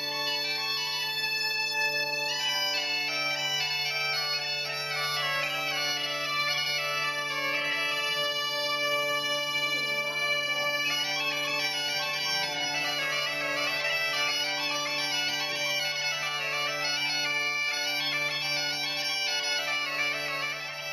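Two Galician bagpipes (gaitas) playing a tune together over a steady, unbroken drone.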